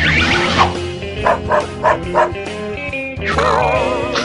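Cartoon orchestral underscore with warbling comedy effects, and four short dog yips in quick succession in the middle.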